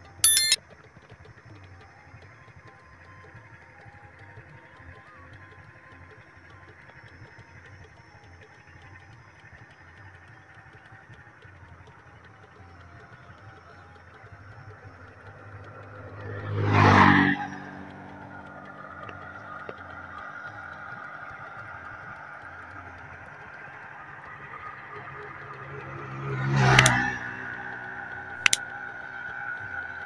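Motor vehicles passing close by on a road, twice: each one swells up and fades away within about two seconds, once a little past the middle and again near the end, over a steady low background hum.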